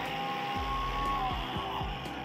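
Electric angle grinder fitted with a buffing pad, running on stainless steel pipe with a steady whine that dips slightly in pitch past the middle. Background music plays underneath.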